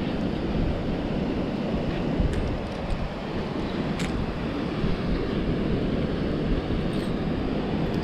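Wind buffeting the microphone over the steady rush of surf, with a couple of faint clicks.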